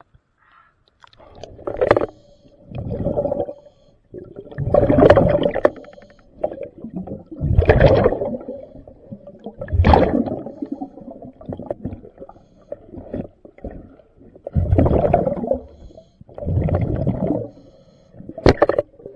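Underwater breathing of a diver through an air regulator: bubbly exhalations surging past the microphone every two to three seconds, with a faint steady hum beneath.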